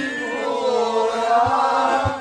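A group of men and women singing a song together at full voice, with long held notes that bend in pitch, over accordion accompaniment.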